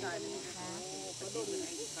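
A person talking, over a steady background hiss.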